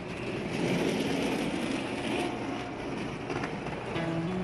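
A rolling suitcase's wheels rattling steadily over a paved street as it is pulled along.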